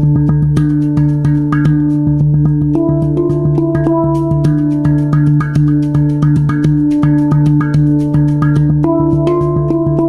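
A Hang, the Swiss steel hand drum, played with the fingertips: a quick, even run of light strikes over a low note that keeps ringing. The higher notes change about three seconds in and again near the end.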